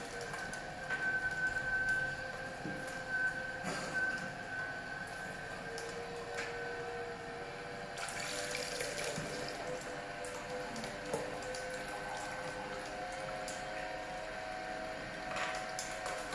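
HH-916F slow juicer's motor running with a steady whine while its auger crushes almonds, with a few sharp cracks early on. About halfway through, the juice spout is opened and almond milk runs into the cup with a splashing hiss.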